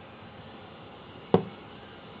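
A single short, sharp knock about a second and a half in, from the plastic parts of a small ultrasonic humidifier being handled, over a faint steady room hiss.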